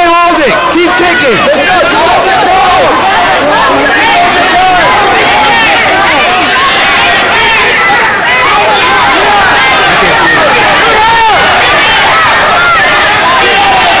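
Crowd of spectators yelling over one another, many voices at once and loud throughout, with no single voice standing out.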